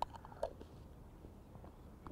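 A few faint clicks and taps as boilie wafter hook baits drop into a small plastic pot, the clearest about half a second in.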